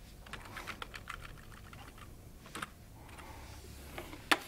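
Typing on a computer keyboard: a quick run of keystrokes in the first second or so, then a few more about two and a half seconds in.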